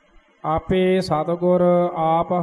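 A man chanting a line of Gurbani in slow, drawn-out Santheya Path recitation, with long held syllables. The chanting starts about half a second in, after a short silence.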